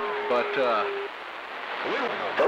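CB radio receiver hiss as the next station keys up, with a weak, garbled voice under the noise. A steady tone is held for about the first second.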